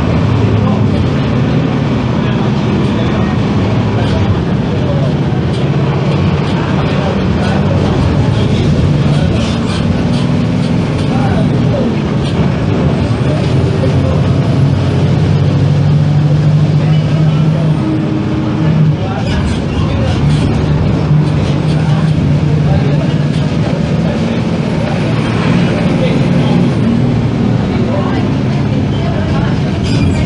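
Six-cylinder diesel engine of a Tatsa Puma D12F city bus running under way, its note rising and dropping several times as it pulls and changes gear, with a brief dip about two-thirds of the way through.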